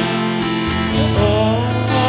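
Acoustic guitar strummed in a song, chords ringing steadily.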